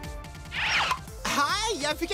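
Cartoon soundtrack: a short sound effect gliding downward in pitch about half a second in, then a character's wordless vocal sounds over background music.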